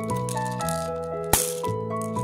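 Background music, a melody of plucked notes, with one short, sharp crackle about two-thirds of the way through as hands handle the paper-wrapped plastic surprise egg.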